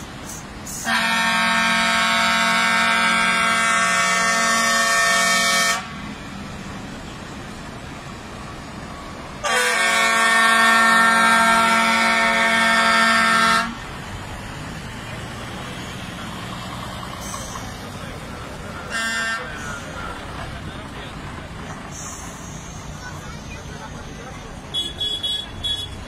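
A vehicle horn sounding two long, steady blasts of about five and four seconds, then a brief toot later on, over the running of passing vehicles.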